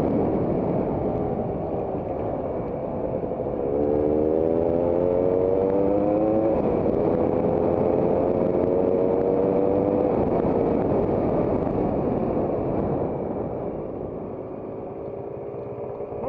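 Trail motorcycle engine heard from on board while riding a dirt track, with wind noise over the microphone. About four seconds in the engine note climbs as it accelerates, drops with a gear change, climbs again, then eases off and quietens near the end as the bike slows.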